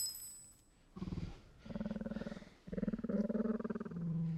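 A huge cat-like beast, the Zouwu, purring in three deep, rapidly pulsing bursts with short breaks between them, the last burst the longest. A high ringing dies away in the first second.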